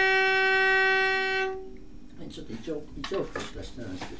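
Bowed violin holding one long note of a scale, which stops a little under two seconds in.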